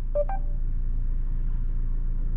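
Short electronic beep tones from the Mercedes-Benz GLE's 'Hey Mercedes' voice assistant about a quarter second in, as it takes a spoken command. Under it runs the steady low rumble of road noise inside the moving SUV's cabin.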